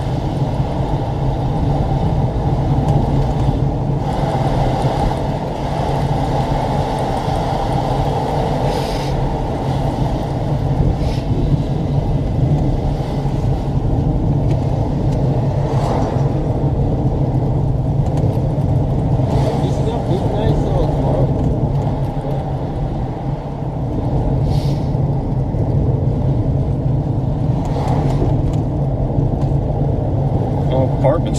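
A car driving along a road: steady low engine and road rumble.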